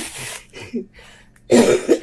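A man coughs once, loudly and sharply, about one and a half seconds in, after a short breathy exhale at the start.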